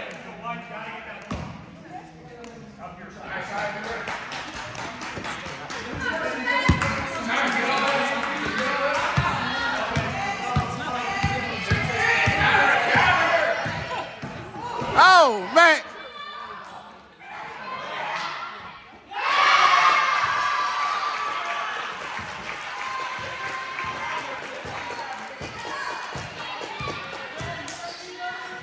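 Basketball bouncing on a hardwood gym floor during live play, with spectators' voices echoing in the hall. About halfway through come two loud short blasts with a wavering pitch, and a few seconds later a sudden burst of shouting from the spectators.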